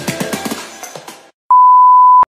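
Intro music with a steady beat fades out over the first second or so. After a brief silence, a loud, steady, single-pitch electronic beep starts about a second and a half in.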